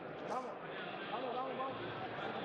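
Several people's voices talking and calling out at once, overlapping and indistinct, with a brief sharp noise a moment in.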